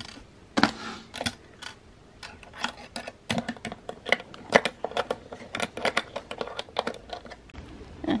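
Small metal hasp and padlock on a wooden lockbox being handled and fastened: many quick, irregular light metallic clicks and rattles, a few a second.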